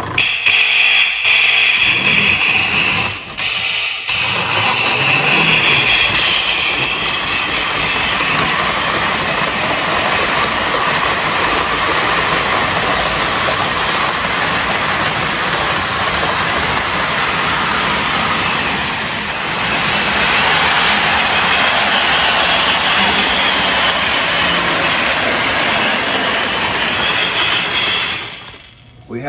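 Lionel MPC-era Blue Comet Hudson model steam locomotive running on the track, its electronic 'sound of steam' system giving a steady, noisy hiss over the running of the motor and wheels.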